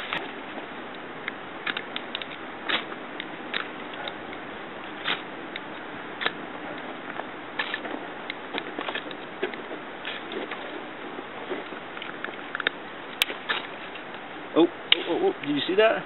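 Steel striker scraped again and again down a magnesium fire-starter rod over a pile of magnesium shavings, short sharp scrapes about once a second at an uneven pace. The sparks do not light the tinder.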